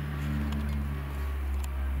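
A steady low machine hum, with a faint click near the end.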